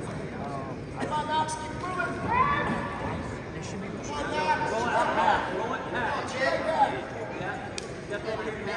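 Voices calling out in a large gym over a low background of chatter. They are loudest about two seconds in and again from about four to seven seconds in.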